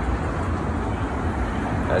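Street traffic noise: a steady low rumble of cars on the road.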